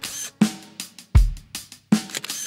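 A short break in a children's song's backing music: about four separate drum hits, bass drum thumps with cymbal and snare, each dying away before the next.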